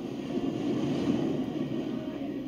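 A steady rumbling sound effect on the read-along's soundtrack, swelling slightly about a second in.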